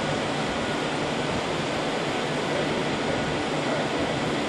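Steady rushing noise inside a moving car's cabin: road and engine noise at an even level, with no distinct knocks or changes.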